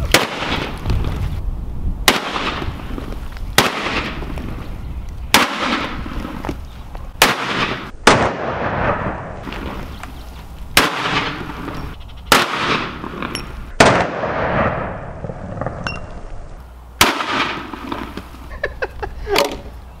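Desert Eagle pistol in .50 AE firing a string of about a dozen single shots, one every second or two. Each is a sharp report with a short fading tail.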